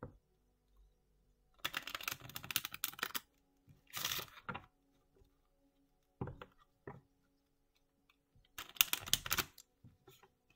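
A deck of tarot cards being shuffled by hand: two runs of rapid card-on-card clicking, one a little after the start and one near the end, with a shorter rustle and a couple of single taps in between.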